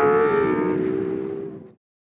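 Ferrari 812 Competizione's naturally aspirated V12 engine running at high revs, its note dipping slightly in pitch and then fading away, cut off to silence near the end.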